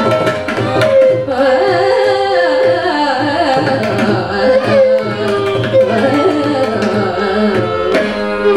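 Carnatic vocal music: a woman singing a gliding, ornamented melody with violin accompaniment and mridangam drum strokes, over a steady drone.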